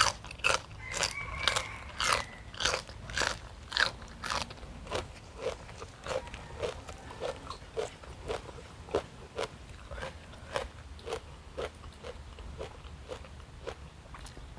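A crisp raw vegetable stalk bitten off with a sharp crunch, then steady crunchy chewing of the raw vegetable, about two crunches a second, louder in the first few seconds.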